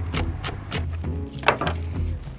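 Chef's knife chopping green onions on a wooden cutting board in quick, even strokes, with one louder knock about one and a half seconds in, over background music with a steady bass beat.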